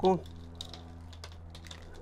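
Fingers teasing apart a hibiscus root ball. The roots and potting soil crackle in quick, faint little ticks as the roots are loosened for repotting.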